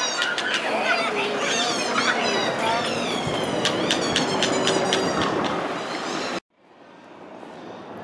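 A tinsel-covered street performer's high, warbling squeaks over the chatter of a busy pedestrian crowd with children. Everything cuts off suddenly about six seconds in, and faint street noise follows.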